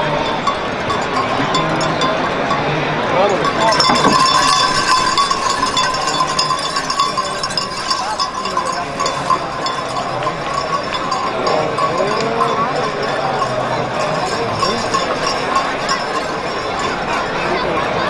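Metallic ringing and clinking from the harness and chains of a mule dragging a stone-loaded sled over sand, with people's voices and calls around it. The ringing is strongest in the first half.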